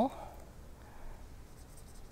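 Faint scratching of a felt-tip permanent marker scribbled back and forth on a pumpkin's skin, filling in a small shape.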